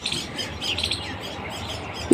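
Birds chirping faintly, with a few short calls about half a second to a second in.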